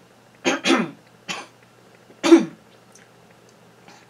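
A woman coughing four times: two quick coughs about half a second in, a third a little later, and the loudest just past two seconds. The coughing comes from a dry throat that keeps playing up while she tries to sing.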